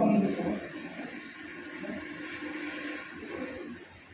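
A man speaking into a microphone, his voice ending about half a second in, then low room noise with faint voice traces.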